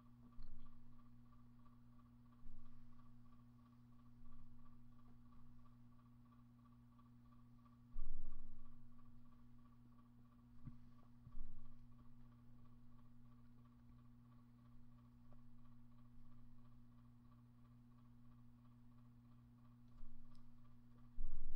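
Small pouch laminator running, its drive rollers drawing a folded copy-paper sheet through with a steady low hum and a faint pulsing whine. A few soft knocks come through, most clearly about eight and eleven seconds in.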